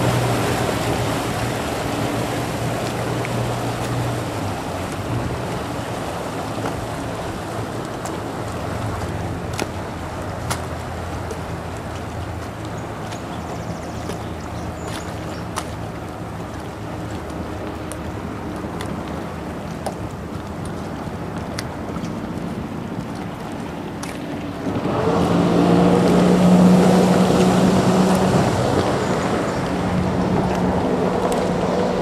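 Sea-Doo RXT jet ski engine running as the watercraft moves off across the water, its hum fading over the first few seconds into a quieter steady drone mixed with water and wind noise. About 25 seconds in, a louder steady engine hum comes in and stays.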